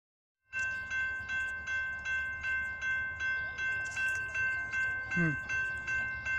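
Railroad grade-crossing warning bell ringing in a steady, even rhythm of about two and a half strokes a second. The crossing is activated with its gates down, signalling an approaching train.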